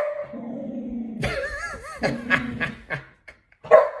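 A pet dog growling and whining in a drawn-out, talking-like grumble: a low sustained growl, a higher wavering whine about a second in, then the low growl again.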